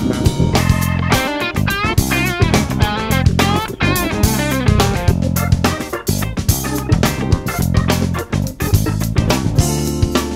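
Instrumental band music: a guitar plays a lead line over bass guitar and drum kit. Its notes bend and waver in pitch about one to four seconds in.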